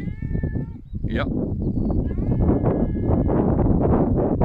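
Tabby tomcat meowing, two drawn-out calls: one at the start and another about two seconds in, which the owner takes for calling his brother. Under the calls is a loud low rumbling background noise.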